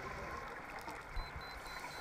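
Underwater ambience on a scuba dive: gurgling regulator exhaust bubbles over a low muffled rumble, with a low thump a little past a second in.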